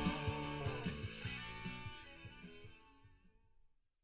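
Hard rock band with electric guitar, bass and drums fading out at the end of a song, dying away to silence just before the end.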